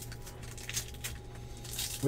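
Foil trading-card pack wrapper crinkling as it is crumpled by hand, with faint light clicks of card handling. The crinkling grows louder near the end, over a low steady hum.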